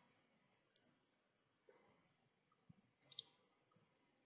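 Near silence broken by a few short, faint clicks, the loudest a quick pair about three seconds in.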